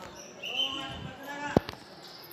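A sharp thump about one and a half seconds in, followed at once by a lighter second one, over people talking.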